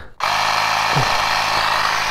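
Handheld cordless tyre inflator switching on a moment in and running steadily as it pumps into a flat motorcycle inner tube. The gauge still reads zero psi: the tube is not taking air.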